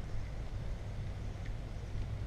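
Steady low rumble of wind on the microphone over a faint, even hiss of fish and vegetables cooking on a portable propane grill, with a light click about one and a half seconds in.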